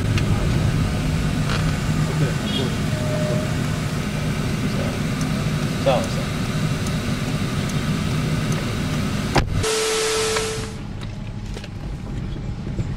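Car running, a steady engine and road rumble heard inside the cabin. Near the end it cuts off abruptly into about a second of hiss with a steady tone, then goes quieter.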